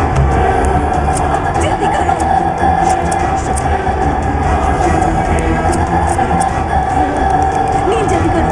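A loud, steady rumbling drone with a held mid-pitched tone and scattered faint crackles: a horror film's tense soundtrack drone.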